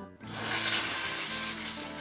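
Handheld shower head spraying water: a steady hiss that starts about a quarter second in.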